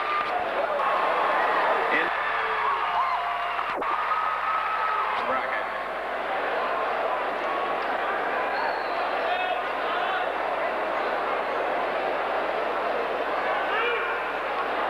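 Crowd chatter in a large arena: many voices talking at once in a steady murmur, with one sharp click about four seconds in.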